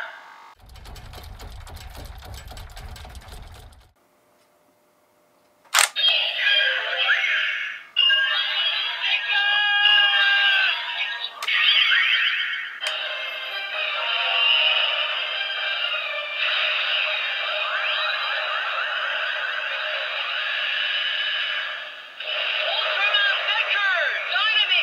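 DX Blazar Brace toy playing electronic sound effects, music and voice call-outs through its small built-in speaker. A low buzzing rattle runs for the first few seconds, then a short silence and a sharp click just before six seconds in, after which the music and effects run on with gliding tones and brief breaks.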